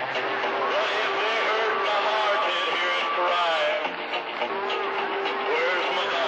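Several stations transmitting at once over an AM CB radio receiver: overlapping, unintelligible voices with steady whistling tones running under them, heard through the radio's speaker.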